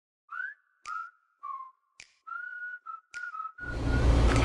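A short whistled tune of a few held and gliding notes, broken by three sharp clicks about a second apart. Just before the end a steady low background noise cuts in, louder than the whistling.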